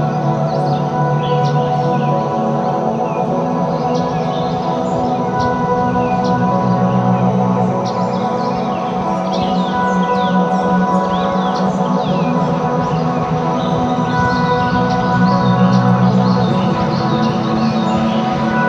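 Ambient music: layered sustained drone tones with a deep low hum, slow and steady, overlaid throughout by many short high chirping calls.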